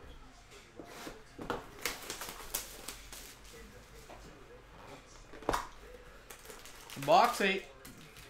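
A cardboard trading-card hobby box being handled and opened: a few short, sharp clicks and scrapes in the first few seconds and another about five and a half seconds in. A brief burst of a man's voice comes near the end and is the loudest sound.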